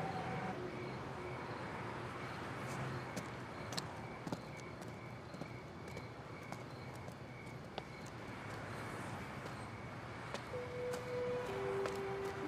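Quiet night ambience from a film soundtrack: a steady low hiss with a faint, evenly repeating high chirp and a few small clicks. Near the end a few low sustained music notes come in, stepping downward in pitch.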